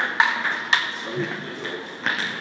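Table tennis ball clicking off paddle and table during a rally: three sharp hits in the first second, then the rally stops.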